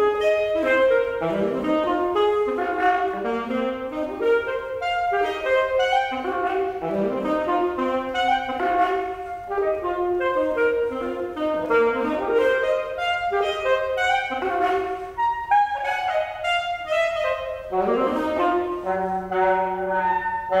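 Solo alto saxophone playing a fast, unbroken stream of notes, with rising figures climbing out of the low register every second or two. It starts suddenly out of a pause. Near the end a held low note sounds under the quicker upper notes.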